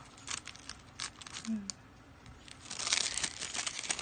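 Plastic and foil toy wrapping crinkling in a child's hands as a packet is unwrapped: scattered crackles at first, then a dense, louder run of crinkling and tearing in the last second or so.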